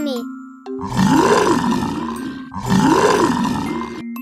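Monster groan sound effect voicing a mummy, heard twice. Each groan is rough and growling and rises then falls in pitch, over light children's background music.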